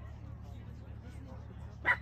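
A dog gives a single short, sharp yip near the end.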